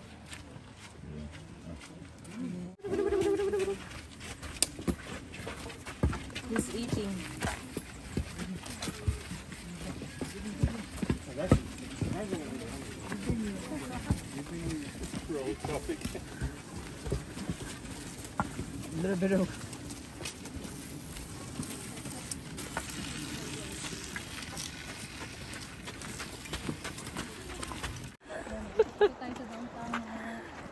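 Indistinct chatter of people on a hiking trail, with scattered sharp clicks and knocks over a steady background hiss.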